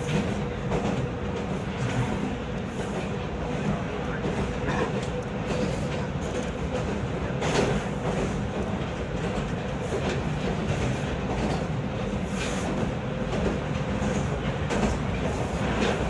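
Steady running noise of a Toronto subway train, a Bombardier T1, heard from inside the car at speed: wheels rumbling on the rails under a faint steady hum, with a few sharp clacks from the track.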